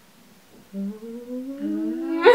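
A woman humming. After a moment of quiet there is a short low note, then a longer one that slowly rises in pitch.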